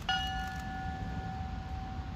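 A polished ship's bell struck once, ringing with a clear tone that fades slowly over about two seconds: a memorial toll for one of the fallen.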